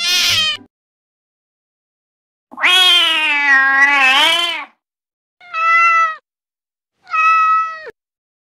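A cat meowing: one long, drawn-out meow of about two seconds that dips in pitch and rises again, followed by two shorter meows. Before them, a harsh cat cry cuts off within the first second.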